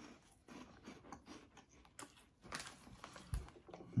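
A crunchy cheese curl being chewed, heard as a run of faint, irregular crunches. There is a soft low thump shortly before the end, and a cough begins right at the end.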